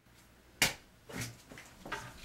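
A single sharp click about half a second in, followed by faint, brief handling noises in a small room.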